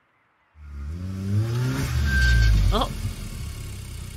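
A car arriving: an engine sound fades in about half a second in, rises in pitch as it grows louder, then settles and keeps running as the car pulls up.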